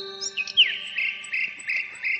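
A long held wind-instrument note fading out in the first second. Then insect-like chirping: short, even chirps about three a second over a steady high buzz, with a few falling whistles near the start.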